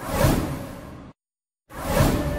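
A swoosh transition sound effect that swells and fades over about a second, then half a second of complete silence, then a music bed starting near the end.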